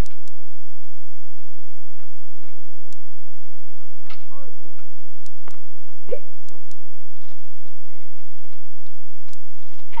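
Steady hiss of an old VHS camcorder recording, with scattered faint clicks and two brief faint voice-like sounds about four and six seconds in.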